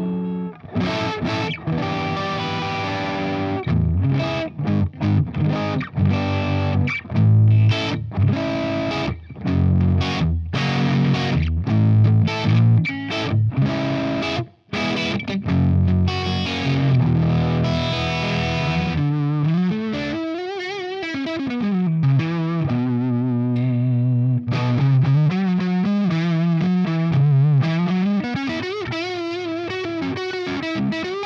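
Distorted electric guitar: a Framus Hollywood hollow-body prototype with a mahogany back and zebra humbuckers, played through a Marshall amp. Choppy chord strikes with short stops fill the first two-thirds, then sustained single notes bent and wobbled with vibrato.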